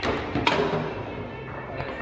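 Sharp knocks of foosball play: the ball struck by the rod figures and banging against the table, one knock at the start and a louder one about half a second later. Background music plays underneath.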